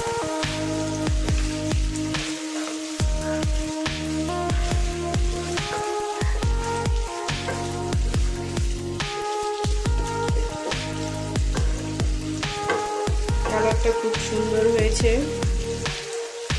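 Background music with sustained held notes and a steady beat, over a fainter sizzle of chicken and potatoes frying as they are stirred in a wok.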